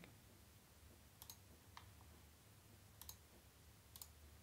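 Faint computer mouse clicks, about four over a few seconds, placing the corner points of a pen-tool mask, over near-silent room tone.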